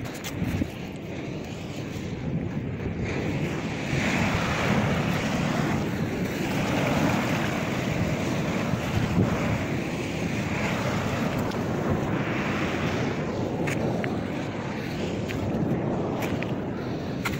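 Sea surf washing over a rocky shore, a steady rush that swells and eases every few seconds, with wind buffeting the microphone.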